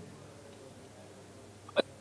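Quiet room tone, then near the end a single short, sharp vocal sound from a man, like a catch of breath, just before he starts to speak.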